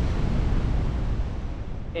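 Wind buffeting the camera microphone of a paraglider in flight: a steady, heavy low rumble with hiss over it.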